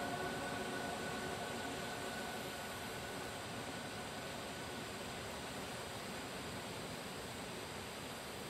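Sustained ambient music tones fading out over the first few seconds, leaving a steady, even hiss of noise.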